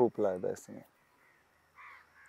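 Brief laughter: a few short pulses of voice, each falling in pitch, ending less than a second in.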